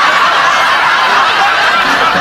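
Laughter from several people at once, steady and unbroken, with snickers and chuckles overlapping.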